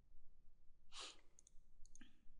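A short breath about a second in, then two pairs of faint, light computer-mouse clicks near the end, over quiet room tone.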